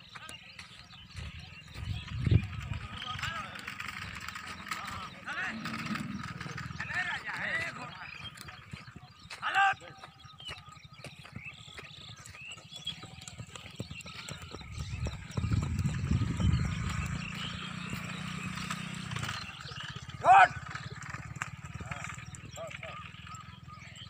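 Outdoor voices calling to one another, with two loud short shouts, one a little before halfway and one near the end. A horse gallops close by about two-thirds of the way through, heard as a low rumble of hoofbeats.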